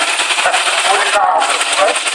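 A veteran car's engine chugging as the car rolls slowly past, under heavy wind buffeting on the microphone, with voices mixed in.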